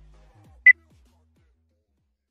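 A workout interval timer's single higher-pitched beep about two-thirds of a second in, the last beep of a countdown of lower beeps, marking the start of the next exercise interval. Low background music fades out about a second in.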